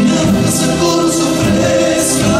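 Argentine folk vocal group singing together in harmony, several voices holding sustained notes.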